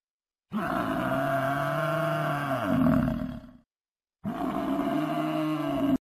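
A deep, pitched animal roar sounds twice: a long call of about three seconds that bends in pitch near its end, then a shorter repeat after a brief gap. Both start and stop abruptly out of dead silence, as a dubbed sound effect does.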